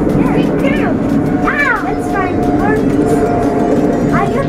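A steady low mechanical drone with a thin held tone in it. High, short chirps that rise and fall come several times over it.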